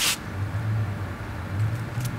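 A match being struck and flaring with a short hiss at the start, followed by a steady low rumble of distant city traffic.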